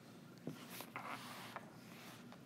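Faint scratching and rubbing, opening with a soft click about half a second in and lasting about a second.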